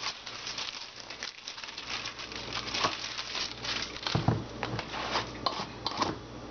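Plastic health-drink bottle and its crinkly plastic wrapper being handled, with dense, irregular small clicks and crackles throughout. A louder dull knock comes about four seconds in.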